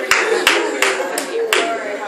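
Hands clapping in a steady rhythm, about three claps a second, with voices underneath.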